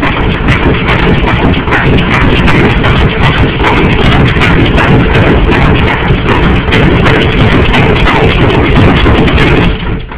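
Loud, heavily distorted music-like noise, so loud that it clips the recording, with no clear notes. It starts abruptly and cuts off suddenly near the end.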